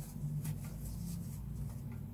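A crochet hook working thick T-shirt yarn: a few faint, short scrapes and rustles as the hook is pushed through stitches and the fabric yarn is pulled through, over a steady low hum.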